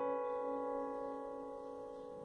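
Solo piano music: a single chord left to ring and slowly fade away.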